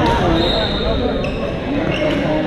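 A voice over thuds of badminton play on an indoor court: shuttle strikes and footfalls on the hall floor.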